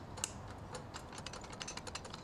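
Faint, irregular light clicks, several a second, over a low background hiss.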